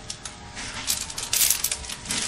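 A plastic snack packet being handled and crinkled in the hands, a run of sharp crackles that is densest and loudest about a second and a half in.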